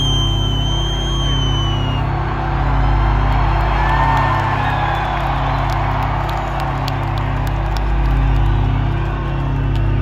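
Loud music with an evenly repeating bass pattern over an arena sound system, with a large crowd cheering and whooping over it. A high whistle, falling slightly in pitch, sounds through the first two seconds.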